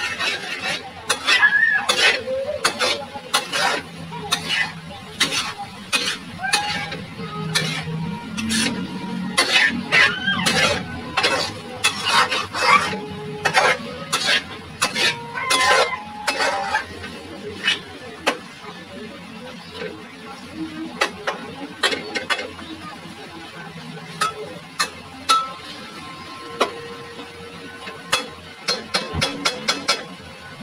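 Metal spatula scraping and knocking against an aluminium wok in quick, irregular strokes as chopped sisig is stirred over high heat; the strokes are densest in the first half.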